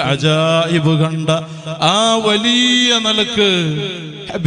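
A man chanting in a drawn-out, melodic voice, holding long notes. His pitch rises about two seconds in and sinks back a second later.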